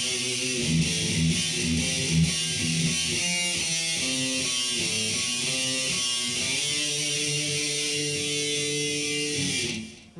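Distorted electric guitar playing a riff: a rhythmic low chugging figure, then a run of single notes, ending on a chord held for about three seconds and then muted.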